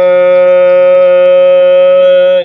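Male Qur'anic recitation (tilawat): the reciter holds one long vowel at a single steady pitch.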